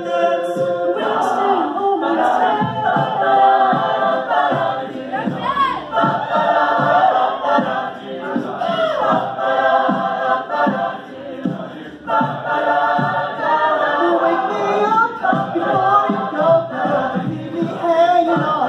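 Mixed-voice high-school a cappella group singing in harmony, with a steady beat running under the voices.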